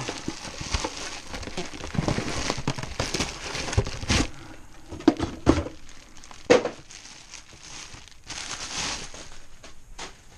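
A clear plastic bag crinkling as a radio-control transmitter is pulled from its small cardboard box and unwrapped. A few sharp knocks come partway through.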